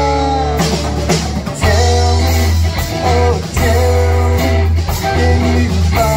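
Live rock band playing: strummed acoustic guitar, electric bass holding low notes and a drum kit keeping the beat.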